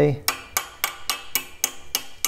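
Ball-peen hammer lightly tapping a pegged key down into the keyway flat of a steel go-kart axle, about four quick taps a second: a light tap fit.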